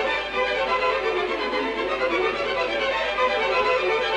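Orchestral classical music with violins to the fore, playing steadily.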